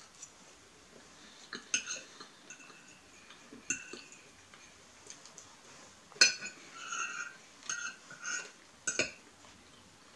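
Metal fork clinking and scraping on a ceramic plate: a handful of separate sharp clinks with brief ringing, the clearest about six seconds in, and short squeaky scrapes in between.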